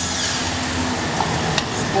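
Steady city street noise: a hum of traffic and engines, with one short tick about one and a half seconds in.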